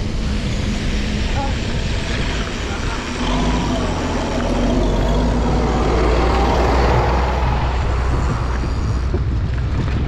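Heavy diesel engine of a motor grader running, a low drone that grows louder as the bike draws alongside it about six seconds in, then eases off. Wind rushes on the microphone throughout.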